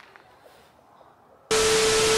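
Near quiet for about a second and a half, then a sudden loud burst of TV static: harsh hiss with a steady tone running through it. It is a static-glitch transition sound effect.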